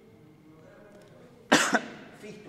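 A short, loud double cough about one and a half seconds in: two quick coughs close together, after a stretch of faint room noise.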